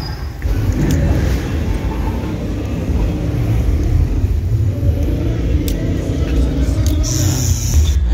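Loud, muffled, bass-heavy party music from a sound system, its low end booming and distorting on a phone microphone, with voices mixed in.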